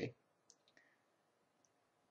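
Near silence with a few faint, short clicks in the first second and one more, even fainter, later on.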